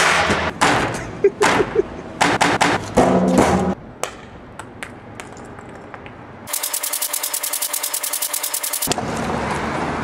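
A run of sharp knocks and bangs, then, after a quieter stretch, a rapid even rattle of about ten strokes a second lasting a couple of seconds, ending in a steady hiss-like noise.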